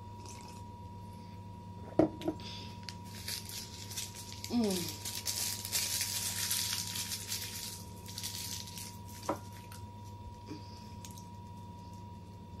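A sharp knock about two seconds in, then a chocolate candy's wrapper crinkling for about five seconds as it is unwrapped by hand; a single click follows near the end.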